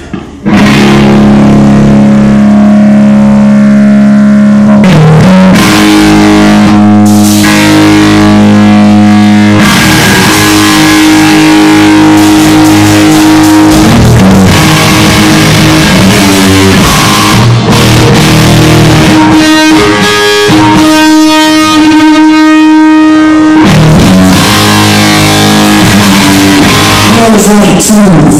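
Live rock band playing: distorted electric guitar over bass and drums, starting suddenly about half a second in and very loud.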